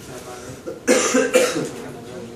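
A person coughing loudly twice in quick succession, about a second in.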